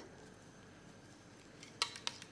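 Faint steady hiss of a quiet room, with one short sharp click near the end.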